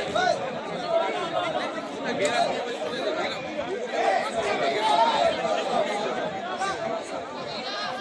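Crowd of people talking at once: a steady din of overlapping voices.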